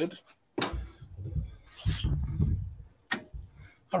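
Clicks and knocks of a metal espresso portafilter being handled on the counter: a sharp click about half a second in, low rumbling handling noise with a louder knock around two seconds in, and another click near the end.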